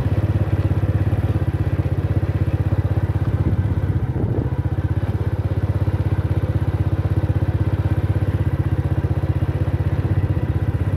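Motorcycle engine running steadily at a constant, low speed, a low even drone with a regular pulse, and a brief rattle about four seconds in.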